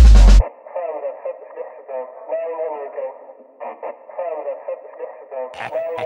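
Breakdown in an electronic IDM track: a heavy bass hit cuts off about half a second in, leaving a voice sample filtered thin like an old radio broadcast. The drums come back in near the end.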